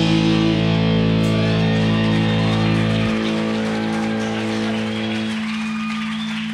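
Electric guitars and bass guitar of a rock band letting the song's final chord ring out. The lowest notes drop out about three seconds in and more near the end, leaving the guitar sustaining with faint wavering high tones.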